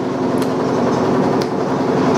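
Loud steady machine noise with an even low hum, growing a little louder, with two faint clicks about a second apart.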